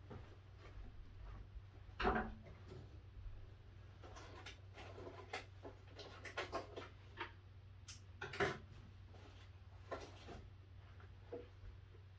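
Scattered light knocks, bumps and rubbing of laminated particleboard furniture panels being handled during flat-pack assembly, the two loudest knocks about two seconds in and near eight and a half seconds, over a steady low hum.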